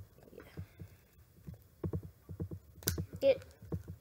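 Plastic fashion doll being handled and posed close to the microphone: a run of soft, irregular low thumps, then a sharp click about three seconds in as a part snaps into place.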